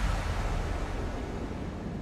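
A rushing whoosh of noise with a deep rumble underneath, fading steadily away.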